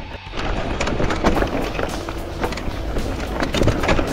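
Electric mountain bike rolling down a rough, stony trail: tyres crunching over loose rock and the bike rattling, with many sharp clicks and knocks.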